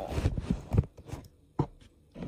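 Handling noise from the camera being repositioned: rubbing and several soft knocks in the first second, then two short clicks near the end.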